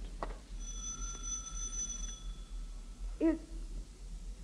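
Radio-drama sound effect of a doorbell ringing once, a steady ring lasting under two seconds. A woman's voice starts to answer near the end.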